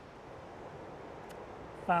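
A low, steady rush of wind and ocean surf.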